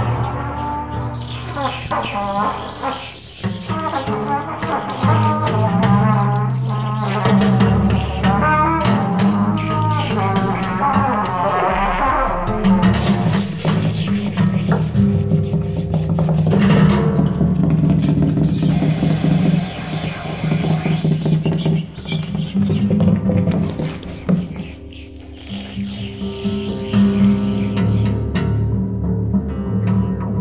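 Free-jazz improvisation: a trumpet plays wavering, bending lines over steady, sustained low notes.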